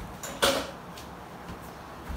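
A single sharp knock in the kitchen about half a second in, ringing briefly, with a couple of faint clicks later.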